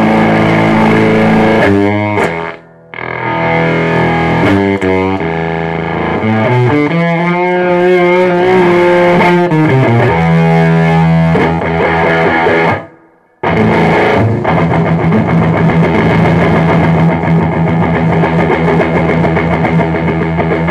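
Electric guitar through a homemade fuzz pedal box cloning the Total Spack Vibes Right Now and Hair Of The Dog fuzzes, ringing thick, distorted held chords. The sound cuts out briefly twice, about two and a half seconds in and again near thirteen seconds, and the pitch wavers for a few seconds in the middle.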